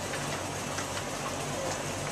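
Dry-erase marker on a whiteboard, a few faint short strokes over a steady hiss and low hum of room noise.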